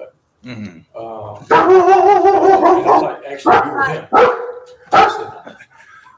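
A dog barking loudly: a long drawn-out bark about a second and a half in, then short sharp barks roughly once a second.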